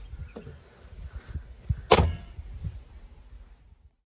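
One loud, sharp bang about two seconds in, over a low, uneven rumble.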